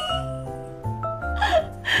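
A young woman giggling in two short breathy bursts over light background music with a steady bass line.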